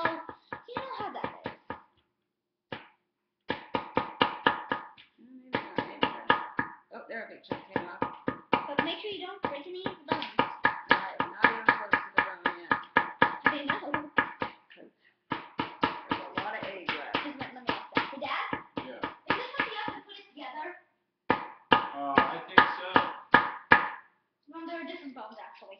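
Small metal digging tool chipping and scraping at a chalky, clay-like dinosaur-egg excavation block, in quick strokes of about five or six a second. The strokes come in bursts with short pauses between them.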